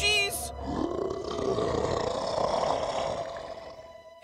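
A cartoon ghost's long rough roar, running about three seconds and fading near the end, just after a short high warbling shriek at the start.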